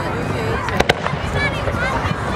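Fireworks show: two or three sharp cracks a little under a second in, over a steady background of people talking.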